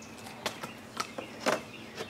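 A circular saw and its vacuum hose being picked up and handled, not running: about four light clicks and knocks.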